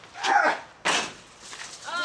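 A brief grunt of effort as a used car tire is heaved, then, just under a second in, a single sudden thud as the tire lands in the cargo box of a box truck.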